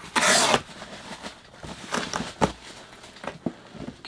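Cardboard box flaps being pulled open, with a loud scraping rustle at the start, then softer rubbing of cardboard and a few light knocks.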